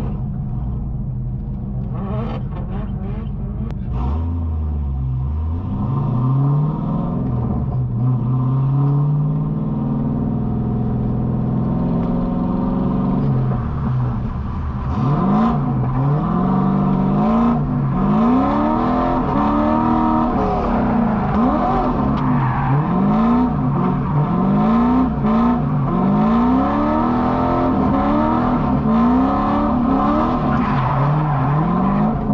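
C5 Corvette's LS1 V8 engine pulling away and running at moderate revs, then from about halfway revved up and down in quick repeated surges, roughly one a second, as the car is driven in a drift.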